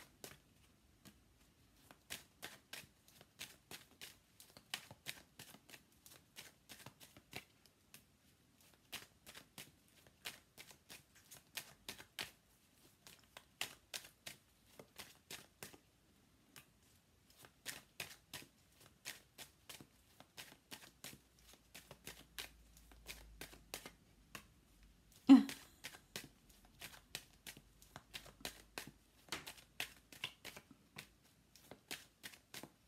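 Tarot deck being shuffled by hand: runs of quick soft card clicks, several a second, with short pauses between runs. One much louder thump comes late on.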